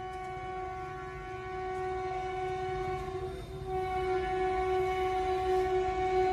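Train horn sounding one long, steady blast, with a slight shift in its pitch about halfway through.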